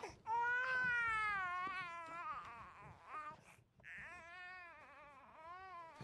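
A small infant crying: one long wavering wail, then after a brief break a string of shorter cries.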